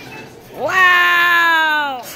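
A toddler's long, loud vocal cry, about half a second in: it swoops up in pitch, then is held while slowly sagging, for about a second and a half.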